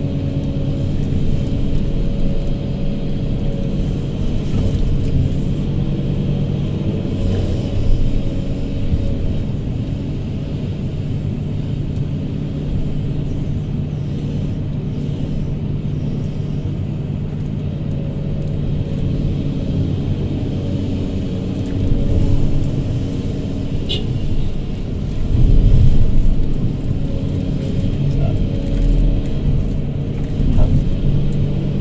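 Hydraulic excavator's diesel engine running steadily under working load as it digs and loads soil, heard from the operator's cab, with a few louder surges in the later part.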